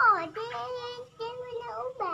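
A small child's singing voice: a falling note at the start, then two held notes of about half a second each.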